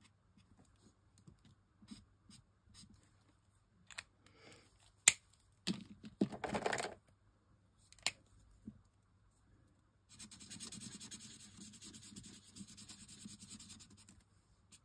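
Alcohol marker nibs rubbing on textured linen cardstock while colouring: faint scratching at first, and a steady scratching over the last four seconds. In between, markers are handled: a sharp click about five seconds in, a short rustling clatter, and another click near eight seconds.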